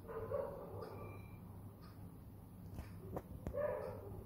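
Two short animal calls, about three seconds apart, over a faint steady low hum and a few light clicks.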